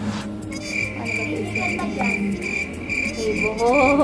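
Cricket chirping: a high, even chirp repeating about two to three times a second, starting about half a second in, over quiet background music. A voice comes in near the end.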